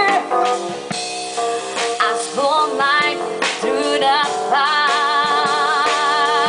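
Live small jazz band: drum kit and accompaniment behind a woman singing long held notes with vibrato into a microphone.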